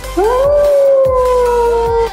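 A wolf howl sound effect: one long howl that rises quickly at the start, then sinks slowly in pitch, and ends at about two seconds. Electronic music carries on underneath.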